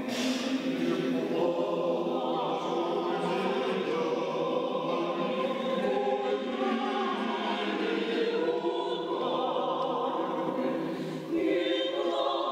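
Mixed Orthodox church choir singing a cappella in sustained harmony, the voices ringing in a large cathedral; a new phrase begins at the start and there is a short break between phrases about eleven seconds in.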